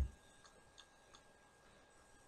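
A short low thump at the very start, then a few faint, irregular ticks over the next second, over quiet room tone.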